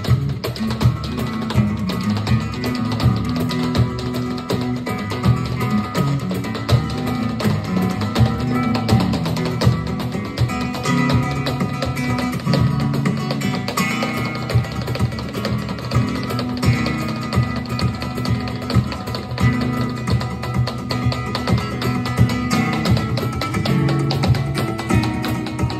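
Live flamenco music: guitar playing over a steady beat.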